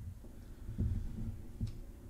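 Soft low thumps from someone moving about with a handheld camera, one about a second in and another near the end, over quiet room tone.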